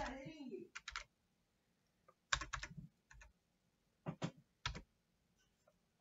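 Computer keyboard keystrokes in small groups: a couple of taps about a second in, a quick run of several keys around two and a half seconds, and two more taps past the four-second mark.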